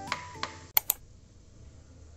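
Background guitar music ends early on, then two sharp clicks follow in quick succession, then faint room tone.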